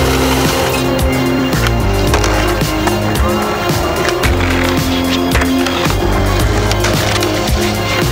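Music with a steady beat and held tones, over skateboard sounds: wheels rolling on paving and the board knocking against a ledge.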